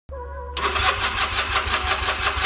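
Electric starter cranking the engine of a 2009 Honda Rebel 250, in even rhythmic pulses of about six a second, starting about half a second in. The engine turns over without firing: the bike has sat too long and won't start.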